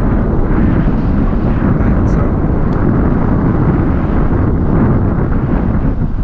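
Loud, steady wind rushing over the microphone of a camera carried in flight under a tandem paraglider, with two faint ticks about two seconds in.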